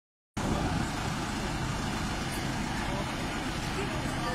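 Engines of vintage trucks or buses idling: a steady, low, dense rumble.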